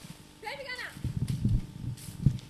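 A brief voice sound, then a run of irregular low thuds from footsteps on leaf-littered ground.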